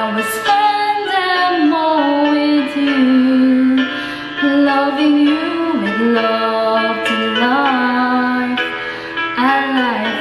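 A woman singing a slow song into a handheld Bluetooth karaoke microphone, with long held notes and some vibrato near the end.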